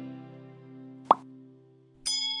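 Guitar-led intro music dying away, with one short rising pop, a button-click sound effect, about a second in.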